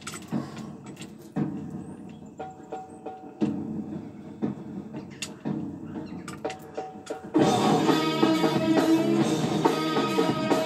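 Metal chain of an isochain exercise bar clinking and rattling in scattered knocks while it is held under tension. About seven seconds in, louder guitar-led music starts suddenly and runs on.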